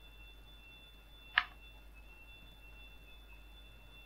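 Faint room tone with a steady high-pitched electrical whine of two thin tones, and a single sharp click about a third of the way in.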